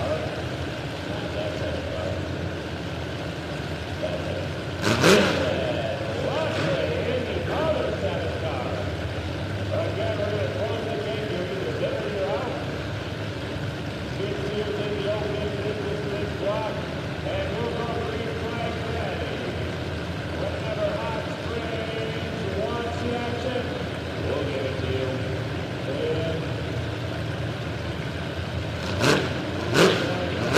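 Demolition derby cars' engines idling and revving in the lineup, over a murmur of people's voices, with a sharp bang about five seconds in and two more near the end.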